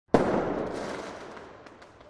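Intro sound effect: a sudden burst that hits sharply just after the start and fades away steadily, with a couple of brief crackles near the end.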